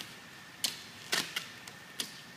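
Vinyl wrap film being lifted and pulled taut over a car hood by hand, giving three short sharp snaps, the first about half a second in and the other two close together about a second in.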